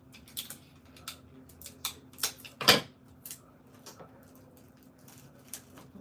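Irregular sharp clicks and crinkles of hands handling items and plastic packaging on a tabletop, the loudest crackle about two and a half seconds in.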